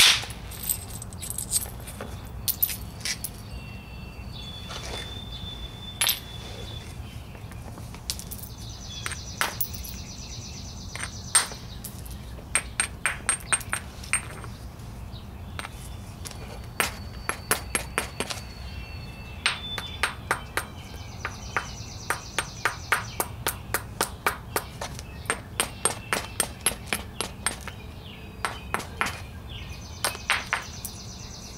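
Quartzite hammerstone striking a flint piece in knapping: sharp stone-on-stone clicks, mostly in quick runs of light taps several a second, with a few harder single blows.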